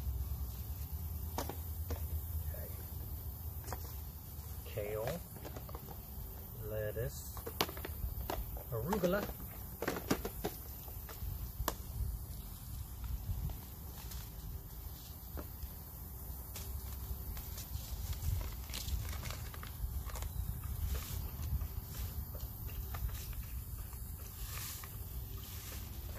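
Scattered light clicks and handling noise from a clear plastic seed-storage case and paper seed packets being handled, over a low steady rumble.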